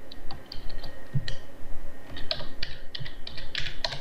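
Typing on a computer keyboard: a run of irregularly spaced keystrokes.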